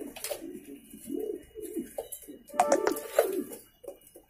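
Reverse Wing (Magpie) Pouter pigeons cooing: a steady run of low, throaty, repeated coos. A few sharp clicks come about two and a half to three seconds in.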